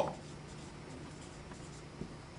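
Faint sound of a dry-erase marker writing on a whiteboard.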